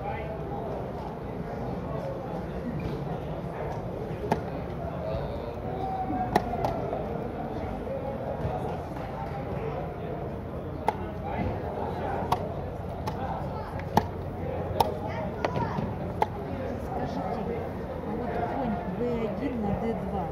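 Scattered sharp clacks of blitz chess play, with pieces set down on boards and the buttons of mechanical chess clocks pressed, about eight in all at irregular intervals. Under them runs a low murmur of voices.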